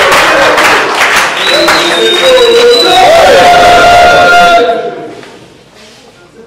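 A crowd cheering, shouting and clapping, dying away about five seconds in.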